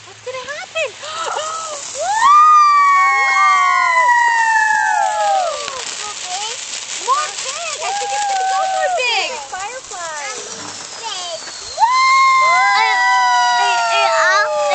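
A ground fountain firework spraying sparks with a crackling hiss, and several whistles that each slide slowly down in pitch over a few seconds, starting about two seconds in and again near the end. Shorter warbling whistles come in between.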